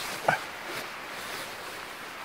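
A single short pitched vocal sound about a quarter of a second in, over a steady outdoor rush of background noise.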